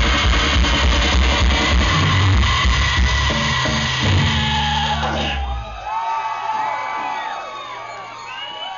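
Live rock band with guitar, bass and drums playing the loud final bars of a song, stopping about five and a half seconds in. The crowd then cheers, yells and whistles.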